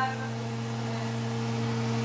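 A steady low electrical hum with a faint hiss, unchanging throughout.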